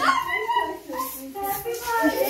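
Children squealing and shrieking in short, high, gliding cries.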